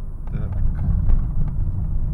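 Cabin noise of a moving Honda Fit Hybrid GP5: a steady low road-and-tyre rumble heard from inside the car.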